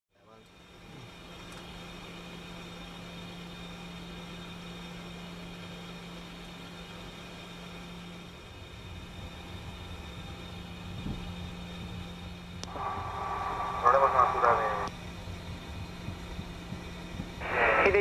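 Steady jet airliner noise with a low steady hum. A short burst of radio voice comes about two-thirds of the way in, and air traffic control radio speech begins just before the end.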